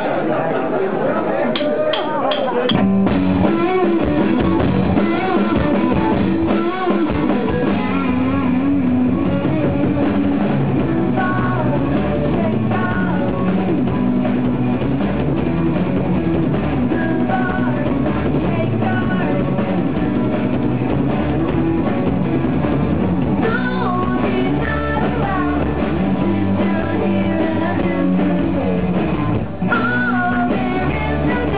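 Live indie rock band of electric guitars, bass and drum kit kicking into a song: four quick clicks count it in, and about three seconds in the full band comes in and plays on loudly.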